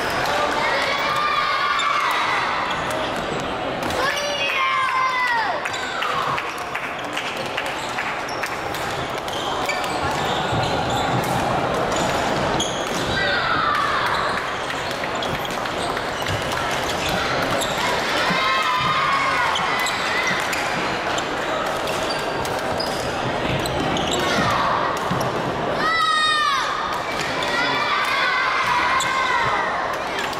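Badminton play on wooden courts: rackets striking shuttlecocks in sharp clicks, and sneakers squeaking on the floor in several high sliding squeaks, the strongest near the end, over steady crowd chatter.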